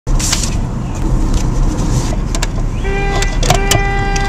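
Car cabin noise while driving: a steady low rumble with a few sharp clicks. About three seconds in, a steady single-pitched tone with a bright, reedy edge starts, breaks off briefly and resumes.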